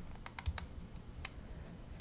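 A handful of faint, sharp clicks from computer input (keys or mouse buttons) during image editing, most of them in the first second and one more a little past the middle.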